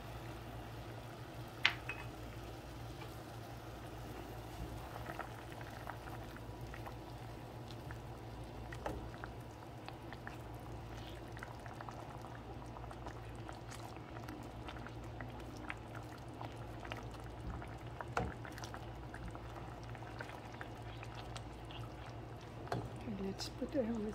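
Soy-based braising sauce simmering in a pan, bubbling and popping steadily as a starch slurry thickens it, with a steady low hum underneath. A single sharp tap comes about two seconds in.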